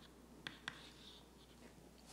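Faint chalk on a blackboard: two sharp taps about a quarter second apart, half a second in, followed by a light scratch. Otherwise near-silent room tone.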